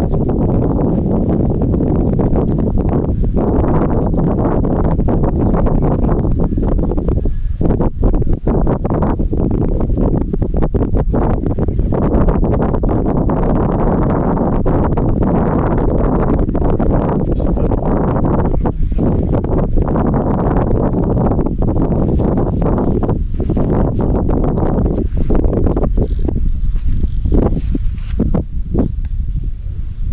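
Wind buffeting the microphone: a loud, steady low rumble with brief dips.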